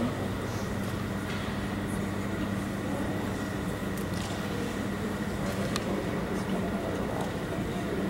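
Large indoor hall ambience: a steady low hum with indistinct background voices and a few faint clicks.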